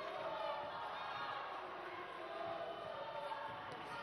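Arena crowd shouting and calling out, many voices at once.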